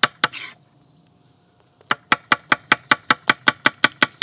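Chef's knife slicing preserved artichoke bottoms on a wooden cutting board: quick, even taps of the blade striking the board, about five a second. The taps stop for just over a second near the start, then resume.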